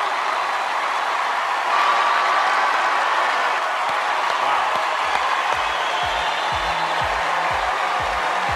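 Studio audience applauding and cheering over music. About four seconds in, a steady low beat comes in at about two thumps a second.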